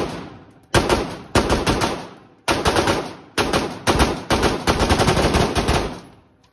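AR-15 rifle in 5.56 with a binary trigger, firing in rapid strings of shots, about six strings with short gaps, the last and longest near the end. Each string rings out in the echo of an indoor range.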